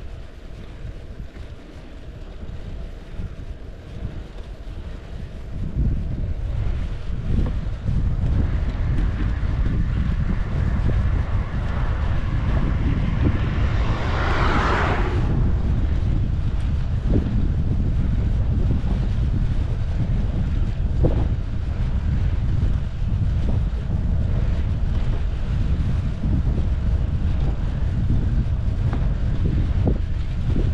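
Wind buffeting the action camera's microphone on a moving bicycle, heavier from about six seconds in. Near the middle a louder rush of noise swells and fades away.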